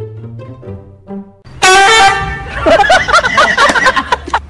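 A run of short pitched music notes, then a sudden loud horn-like honk about a second and a half in, held for about a second, followed by warbling squeals that rise and fall quickly.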